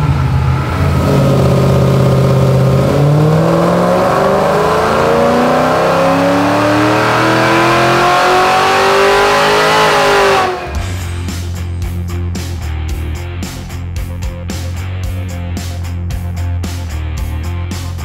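2019 Chevrolet Camaro ZL1's supercharged 6.2-litre V8 on a hub dynamometer, holding a steady note briefly, then run up at full load in one long, smoothly rising power pull. The engine note cuts off suddenly about ten seconds in, and rock guitar music takes over for the rest.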